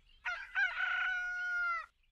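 A rooster crowing once: a short opening burst, then one long held note that cuts off sharply near the end.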